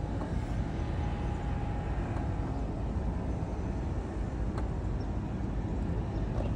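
Royal Enfield Guerrilla 450's single-cylinder engine idling steadily.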